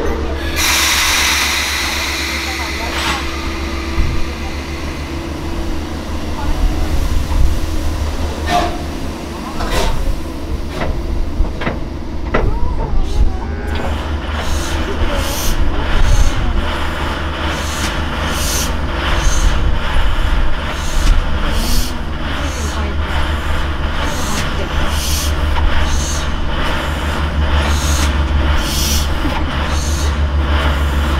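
Preserved JNR Class 9600 steam locomotive 49671, driven by compressed air, moving forward at walking pace: a hiss of air as it gets under way and a steady low rumble, then from about halfway regular exhaust chuffs, roughly one a second.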